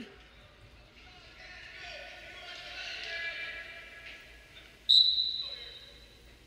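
Faint arena crowd noise and distant shouted voices, then about five seconds in a referee's whistle blows once, a short high blast that fades within a second, signalling the restart of wrestling from the neutral position.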